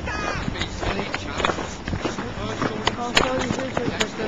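Indistinct voices of people walking, with the scuff of footsteps and short knocks from handling a handheld camera.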